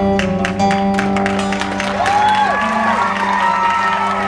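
Two acoustic guitars playing an instrumental passage through a PA: chords and held notes, then a lead line with notes that bend up and down in the second half.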